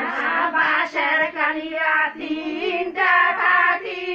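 High voices singing a traditional Bengali wedding song (biyer geet), with no instruments heard.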